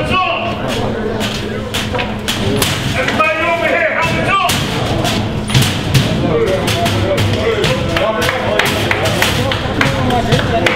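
A football team crowding together in a locker room: irregular knocks and thuds of helmets and pads, with voices calling out. The loudest calls come between about three and four and a half seconds in.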